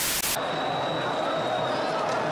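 A burst of TV-static hiss that cuts off about a third of a second in, giving way to the background of an old television football broadcast: a steady stadium crowd murmur with a faint high-pitched whine.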